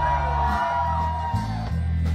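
Rock music with a heavy, stepping bass line. A long held high voice, a yell or sung note, rides over it and ends about one and a half seconds in.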